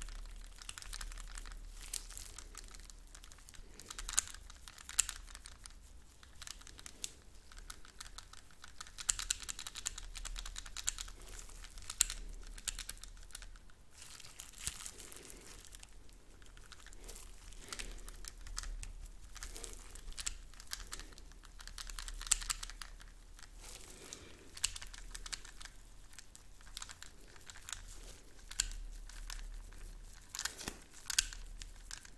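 Plastic cling film crinkling and rustling under gloved hands and a tattoo machine, with frequent light clicks and a few sharper taps scattered through.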